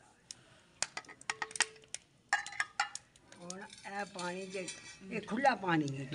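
A china plate clinking and tapping against the rim of a clay cooking pot as spices are knocked off it into the pot: a string of sharp clinks over the first two seconds or so, one with a short ring. Voices talk through the second half.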